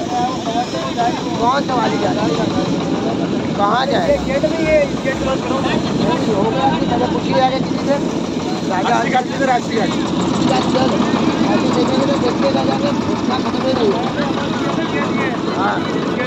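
A boat engine running steadily on the river, with people's voices chattering over it.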